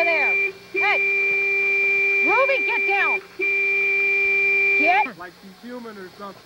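A car horn held down in three long blasts with two short breaks, stopping about five seconds in. Over the horn a pit bull cries along with it in short calls that rise and fall in pitch.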